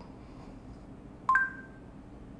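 A single short electronic beep from the Asus Zenfone C's speaker about a second and a half in, two steady tones sounding together: the Google voice search tone that marks the end of listening after a spoken query.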